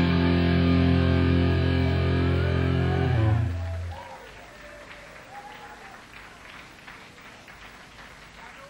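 A rock band's final chord held out on electric guitar and bass, stopping about three and a half seconds in, then faint applause from the audience.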